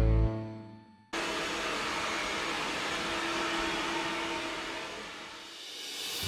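Hand-held hair dryer blowing steadily with a faint hum, starting suddenly about a second in and easing off near the end.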